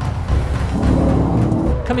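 Range Rover Sport P400e's two-litre Ingenium four-cylinder petrol engine pulling hard, its note rising through the middle of the clip, mixed with background music.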